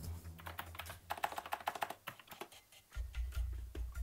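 Typing on a computer keyboard: a run of quick keystrokes, densest about a second in, then a few scattered clicks.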